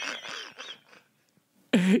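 A voice fading out over the first second, a short near-silent gap, then laughter breaking out loudly near the end.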